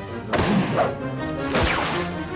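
Cartoon sound effects over action background music. A sudden swish comes about a third of a second in, and a longer one sweeping in pitch follows about a second and a half in.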